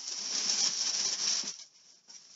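Plastic bag rustling and crinkling as it is handled, stopping about a second and a half in.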